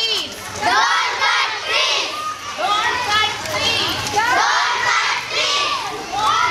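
A group of children shouting slogans together in chorus, one shout after another about a second apart.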